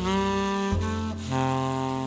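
Jazz quartet playing a slow ballad: a tenor saxophone carries the melody in long held notes, changing note twice, over a double bass line.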